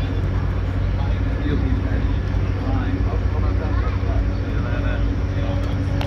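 Interior of a moving passenger train: a steady low rumble of wheels on the track with a steady hum running under it, and voices in the carriage over the top.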